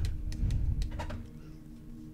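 Tarot cards being handled: a low thud near the start and a few faint clicks, over a faint steady hum.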